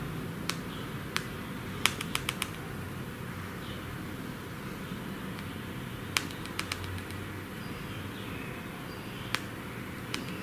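Light tapping on a smartphone's on-screen keyboard as a message is typed: short, sharp clicks in little clusters, a quick run of them about two seconds in and more a few seconds later, over a steady background hiss.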